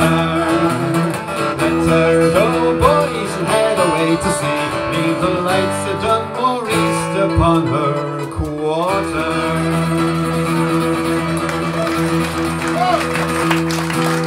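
Acoustic guitar-led folk band playing the closing bars of a song, with voices and instruments holding wavering notes, then settling a little past halfway onto a long sustained final chord.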